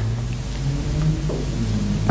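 A steady low hum with a faint even hiss above it, and no distinct events.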